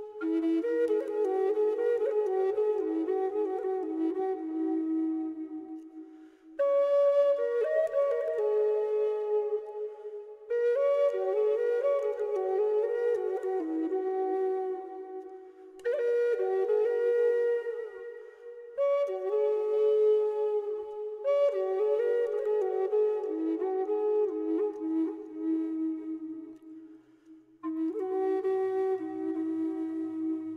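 Background music: a flute playing slow melodic phrases, with short breaks between phrases every few seconds.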